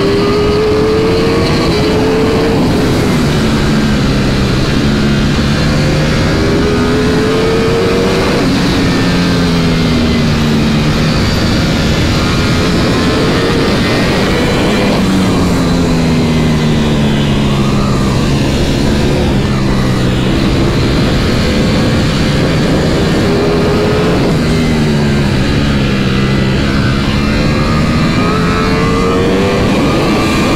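Ducati Panigale V4 motorcycle's V4 engine heard onboard at speed, its pitch rising under throttle and falling off again several times, with heavy wind rush over the bike.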